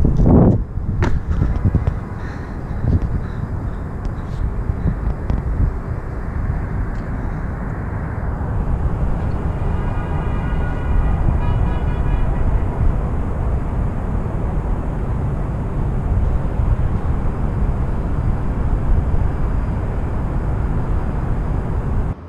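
Steady low rumble of wind on the microphone mixed with the noise of city traffic far below a high rooftop.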